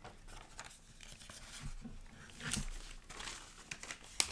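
Paper rustling as the pages of a notebook are handled and turned, in a few short rustles, the strongest about two and a half seconds in.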